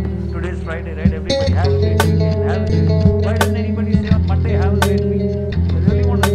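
Instrumental trap-soul hip-hop beat built from a sampled electric bass solo: sustained, melodic bass notes over a beat with a sharp drum hit about every second and a half.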